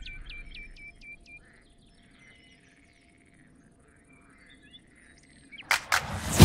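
Small birds chirping faintly: a quick run of short high chirps in the first second or so, then scattered quieter chirps. A brief sharp noise comes near the end.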